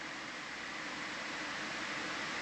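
Steady hiss of background noise with a faint steady hum under it, even in level throughout.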